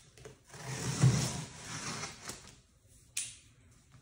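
Box cutter slicing along the packing-tape seam of a cardboard box, a scratchy tearing run of about two seconds, followed by a single short sharp sound of the box being handled near the end.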